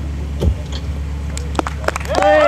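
Open-air stage ambience with a low steady rumble, one thump about half a second in and a few light clicks near the end.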